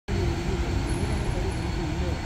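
Large SUV's engine running as it rolls slowly forward, a steady low rumble.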